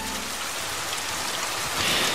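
Sound effect of a sudden heavy downpour: steady rain noise that grows a little louder toward the end.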